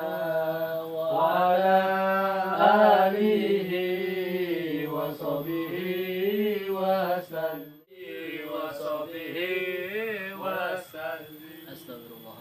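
A man's voice chanting Arabic dhikr in a drawn-out, melodic recitation, the same phrase repeated over and over. It breaks off briefly about eight seconds in, resumes, and grows fainter near the end.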